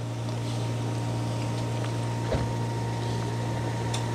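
A steady low mechanical hum with a thin high tone above it, and one faint tap a little past halfway.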